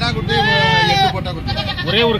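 Young Kodi goats bleating: one long, wavering bleat about a third of a second in that lasts nearly a second, then a shorter wavering bleat near the end.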